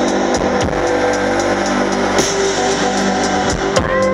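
Live rock band playing an instrumental passage: electric bass, keyboards and drum kit, with sustained pitched chords and a few sharp drum hits.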